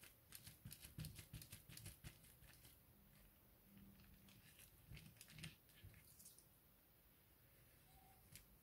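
Near silence, broken by faint small taps and rubbing in the first couple of seconds and again about five seconds in: hands and a pencil pressing and smoothing a freshly glued paper strip.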